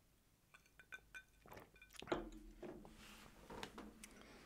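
Faint sounds of a man drinking from a glass: a few light clinks of the glass with a short ring in the first couple of seconds, then soft sipping and swallowing from about halfway.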